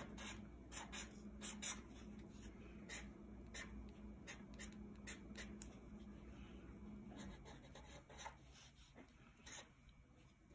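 Black Sharpie permanent marker drawing on paper: faint, short, quick scratchy strokes at an irregular pace as lines are drawn.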